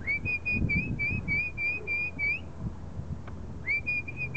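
A person whistling a quick run of short, even notes, about four a second, to call a puppy over; the run stops after about two and a half seconds and a second run starts near the end.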